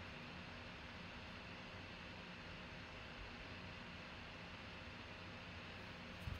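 Quiet room tone: a steady, faint hiss with a low hum underneath and no distinct events.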